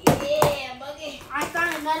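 Two sharp knocks about half a second apart, followed by people talking.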